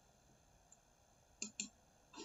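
Computer mouse button clicking twice in quick succession, about a second and a half in, against near silence.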